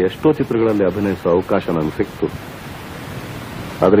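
A voice speaking Kannada in an old radio interview recording, over steady hiss. The speech stops a little past two seconds in, leaving only the hiss, and starts again near the end.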